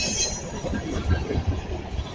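Freight train tank cars rolling past at close range: a steady low rumble of steel wheels on rail, with a brief high squeal from the cars in the first half-second.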